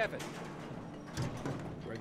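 Wind rushing over the microphone at the open edge of an upper floor of a high-rise under construction, with a gust and a knock about a second in.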